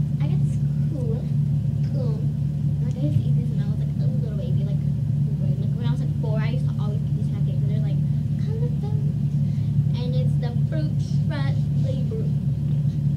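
A steady low hum runs throughout, with a girl's voice over it, quieter and not forming clear words.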